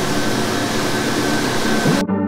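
Steady, loud rushing noise on the open deck of a moving boat: wind on the microphone and the churning wake water, with a low steady hum underneath.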